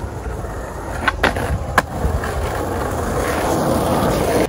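Skateboard wheels rolling steadily over concrete pavement, heard close to the ground, with two sharp clicks a little past a second in and just before two seconds.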